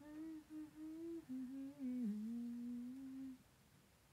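A woman humming with closed lips: a short run of held notes that steps down in pitch about two seconds in and stops about three and a half seconds in.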